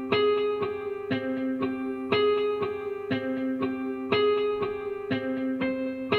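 Omnisphere software synth preset playing a looped melody of plucked-sounding notes, about two a second, with every fourth note clearly louder. The Velocity MIDI effect's curve is pushing high and low velocities apart, giving way more contrast between soft and hard notes.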